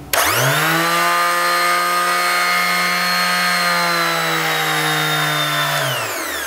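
Einhell TE-OS 2520 E electric orbital sander switched on and running free in the air: the motor spins up within half a second, then runs with a steady, really loud whine. Near the end its pitch falls as it winds down.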